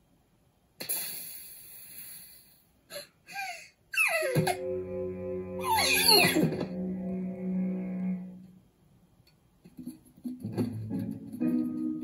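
Cartoon soundtrack: a sudden noise about a second in that fades over a couple of seconds. From about four seconds in, the small cartoon birds' voices glide downward over held tones. Plucked-guitar music starts about ten seconds in.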